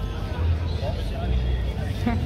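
Background chatter of an outdoor crowd over a steady low rumble.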